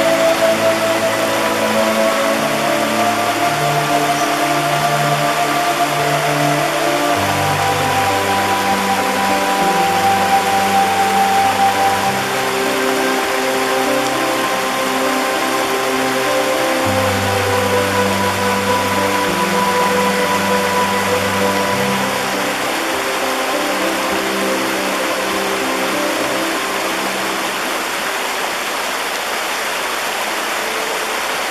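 Shallow stream rushing and splashing over rocks in a steady hiss, under slow, sustained ambient music chords that change every few seconds. The music fades out near the end, leaving only the water.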